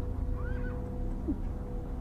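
A horse whinnying briefly and faintly over a steady low hum.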